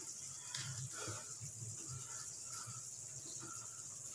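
Faint steady hiss with soft, scattered little pops from a pan of tomato sauce and eggs simmering over a low gas flame.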